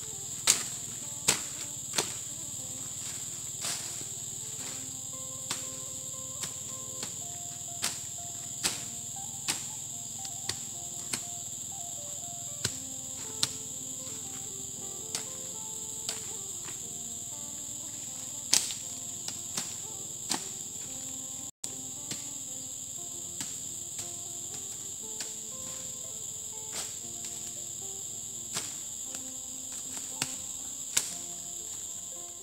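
A steady, high-pitched insect chorus, with sharp chops at irregular intervals from a machete cutting weeds and brush.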